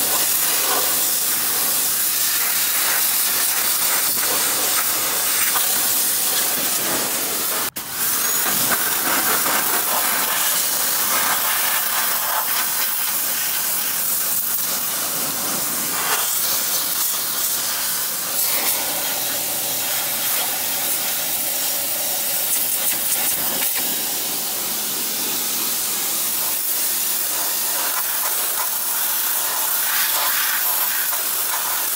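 Pressure washer wand spraying a high-pressure jet of water onto the metal, hoses and lines of a car's engine bay, a loud steady hiss of spray. The spray breaks off for an instant about eight seconds in.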